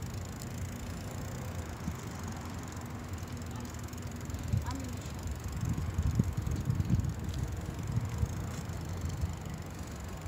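Low, uneven outdoor rumble of a moving phone microphone following a bicycle ride, with a few faint clicks, growing bumpier from about five seconds in.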